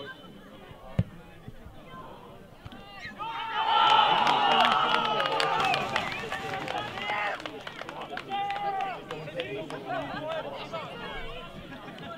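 A football kicked hard once, about a second in, then about three seconds in a burst of many men's voices shouting and cheering, loudest for a few seconds and tailing off into scattered shouts: players and spectators celebrating a goal scored from the free kick.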